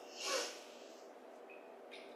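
A short breath drawn in close to the microphone, about half a second long near the start, then quiet room tone.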